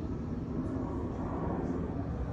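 Steady low outdoor rumble with no distinct event standing out.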